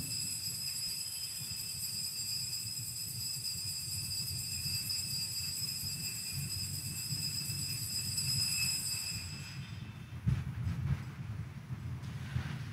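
Altar bells rung continuously at the elevation of the consecrated host: a steady high ringing of several bell tones that fades out about nine to ten seconds in, with a low knock just after.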